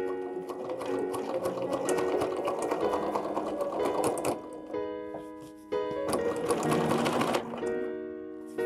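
Bernina B740 domestic sewing machine stitching free-motion, with the feed dogs lowered and speed set by a foot pedal. It runs in fast needle strokes for about four seconds, stops, then runs again briefly. Background piano music plays underneath.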